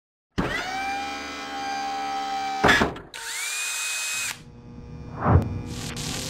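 Power-tool-like whine sound effects: a whine spins up and holds for about two seconds, a brief loud burst cuts it off, and a second, shorter whine spins up and stops. A deeper loud hit comes about five seconds in.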